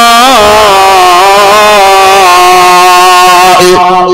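A man's voice holding one long chanted note into a microphone, the drawn-out vowel of a sing-song sermon, with a brief wobble at the start and then held steady until it breaks off near the end.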